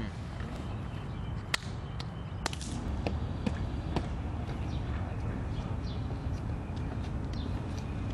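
Steady low rumble of wind on the microphone outdoors, with about five sharp knocks in the first half, the first the loudest.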